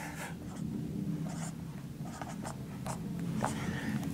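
Marker writing on a whiteboard: a series of short separate scratching strokes as Arabic letters are written out.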